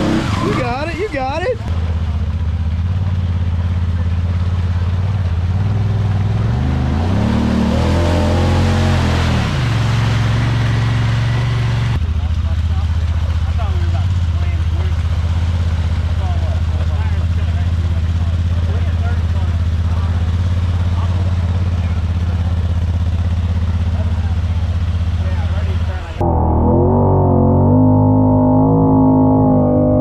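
Honda Talon side-by-side's engine running at a steady pace while it wades through swamp water, with water churning and splashing around the tyres; the engine note rises and falls briefly about 8 s in. Near the end the sound changes abruptly to a duller, muffled one.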